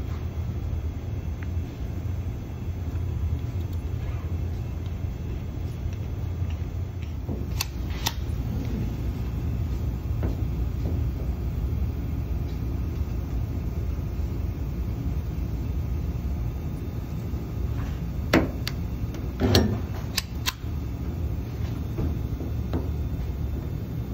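Micro spot dent-repair welder tacking pulling keys onto a car's steel panel: a close pair of sharp clicks about eight seconds in, then four more between about 18 and 21 seconds. A steady low hum runs underneath.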